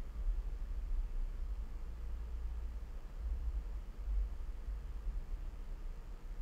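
Quiet room tone: a steady low rumble with faint hiss, with no distinct event.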